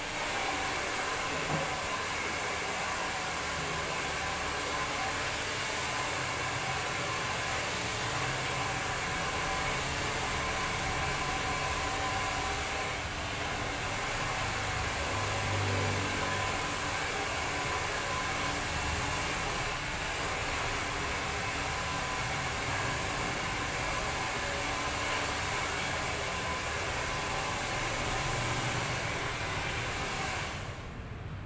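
Handheld hair dryer running steadily, blowing hot air through short hair as it is blow-dried.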